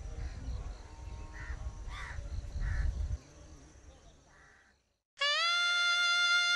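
Crows cawing several separate times over a low rumble that drops away about three seconds in. After a brief silence, a sustained instrumental note of background music starts near the end.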